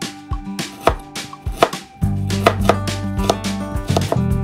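Kitchen knife mincing fresh ginger on a cutting board: quick, even knocks of the blade on the board, about four a second. Background music plays under it and grows louder about halfway through.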